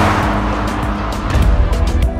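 Background music with a steady beat and heavy bass, opening with a rushing whoosh that fades within the first half second.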